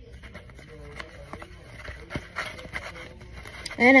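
Small clicks, taps and rustles of hands and a marker handled inside a plastic tub, with a few sharper taps about one and two seconds in. A girl starts speaking near the end.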